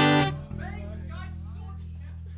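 An amplified acoustic guitar strums one chord at the very start, which rings and is damped about half a second in. A steady low electrical hum and faint voices follow.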